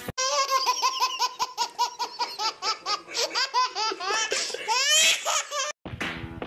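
Baby laughing hard in a long run of short, rapid laughs, about three or four a second, that climb higher and louder near the end before cutting off suddenly.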